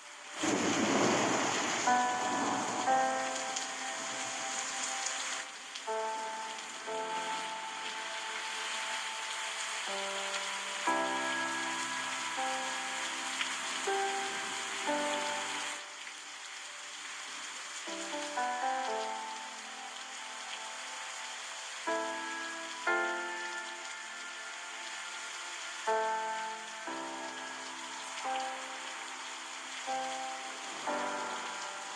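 Steady rushing river water with a slow melody of held musical notes played over it.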